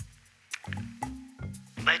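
Background score music with a low, steady held drone under the scene.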